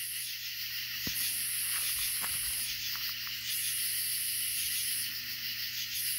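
Outdoor night ambience: a steady high hiss, with a still higher-pitched band that switches on and off about every two and a half seconds, and a couple of faint ticks.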